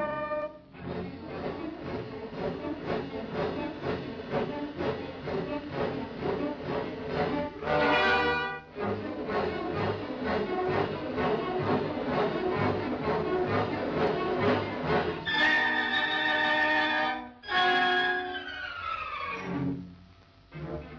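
Orchestral film score led by strings, playing rapid repeated figures. The run is broken by held chords about eight seconds in and again near the end, and the last chord slides down in pitch.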